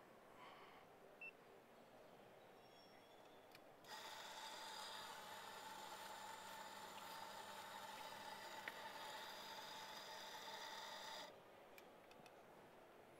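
Electric coffee grinder running steadily with a whine for about seven seconds, grinding a dose of coffee into a portafilter. It starts about four seconds in and cuts off shortly before the end. A brief click comes about a second in.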